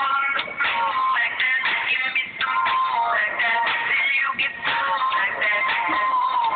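Recorded song playing, with a continuous sung vocal over a steady backing.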